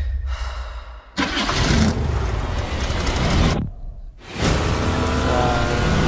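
The Ecto-1 car's engine in a movie-trailer soundtrack, catching about a second in and revving hard, easing off briefly near four seconds and then revving again.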